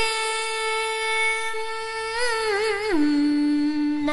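A woman's voice sustaining one long sung note in a Vietnamese tân cổ song. The note is held level, then a vibrato swells on it, and about three seconds in it steps down to a lower pitch and holds there.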